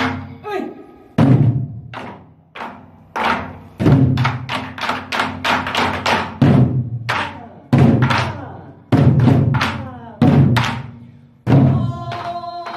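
Nanta barrel drums struck with two wooden sticks, playing a rhythmic prelude pattern: deep booms on the drumhead mixed with quicker, sharper clacks on the rim.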